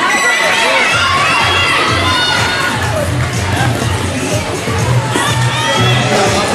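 Roller derby crowd cheering and shouting, with many high-pitched voices calling out over one another.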